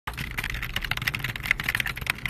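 Computer keyboard typing sound effect: a fast, uneven run of key clicks, many a second.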